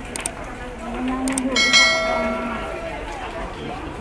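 Subscribe-button animation sound effect: a couple of mouse clicks, then a bell-like chime that rings and fades over about a second, with a low drawn-out tone just before it.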